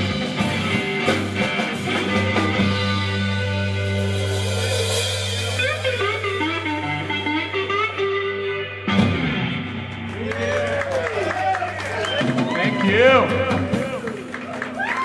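Live rock trio of electric guitar, bass and drums playing, then letting chords ring out as the song winds down. About nine seconds in there is a sharp final hit, and after it the low amp drone carries on while voices call out with rising and falling pitches.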